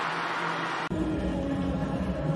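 Stadium crowd noise, a steady roar with no distinct voices. Just before a second in it breaks off abruptly and gives way to a different, lower ambience with a faint hum.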